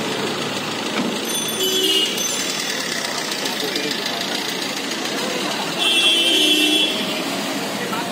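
Several people talking at once over the steady din of busy street traffic, with a brief louder, higher sound about six seconds in.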